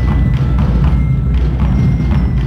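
Music with a steady drum beat, played in a large echoing hall, likely a ceremonial band during the color guard's presentation.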